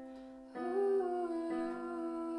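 A Korg digital piano playing slow sustained chords, with new chords struck about half a second in and again about a second later. Over them a woman's voice sings a held, wordless note that wavers in pitch.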